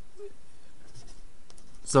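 Marker pen writing on a paper worksheet, a faint, even scratching of the tip across the page.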